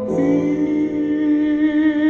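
A slowed-down pop song: a voice holds one long, slightly wavering note, hummed or sung without clear words, over soft accompaniment.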